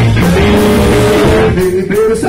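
Live rock-and-roll band playing loudly, a tenor saxophone holding a long note over guitar, bass and drums. The band thins out briefly near the end.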